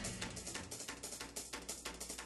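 An acoustic drum kit playing quietly with quick, light strokes, just after the loud full band cuts off.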